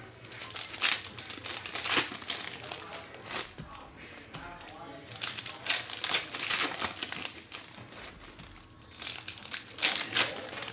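Foil wrappers of trading card packs crinkling in bursts as the packs are torn open and handled.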